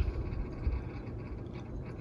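Quiet room background with a low rumble and no distinct event.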